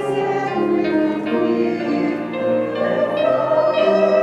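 Group of voices singing a hymn in five-four time.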